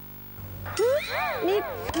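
A high female voice speaking Thai with wide swoops in pitch, starting just under a second in.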